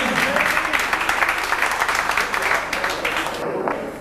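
Audience applauding, a dense clapping that dies away near the end.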